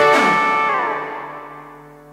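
Karaoke backing track's final D major chord ringing out and fading away, its upper notes sliding down in pitch partway through.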